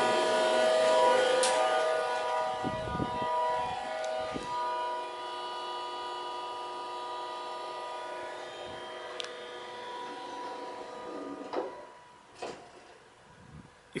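Otis hydraulic elevator machinery giving a steady whine of several tones. It slowly fades and dies away about twelve seconds in, followed by a couple of short knocks.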